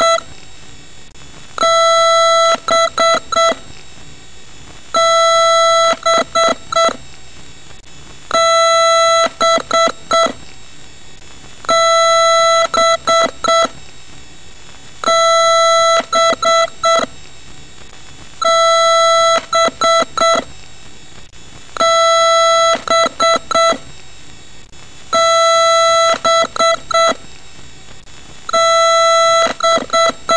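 Electronic computer beeper sounding one long beep followed by a quick run of short beeps, the same pattern repeating about every three and a half seconds.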